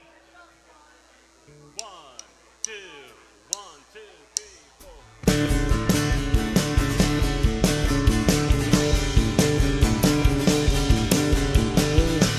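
A count-in of four sharp clicks just under a second apart, with a man saying "one, two". About five seconds in, a live rock trio comes in together and loud: drum kit with a steady beat, six-string fretless bass and acoustic guitar.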